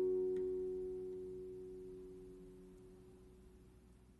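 Acoustic guitar's final strummed chord ringing out and slowly dying away, nearly to silence by the end: the closing chord of the song.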